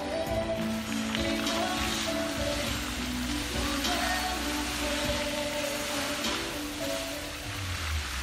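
Music playing over the steady, rain-like hiss of fountain jets spraying and water splashing back into the pool.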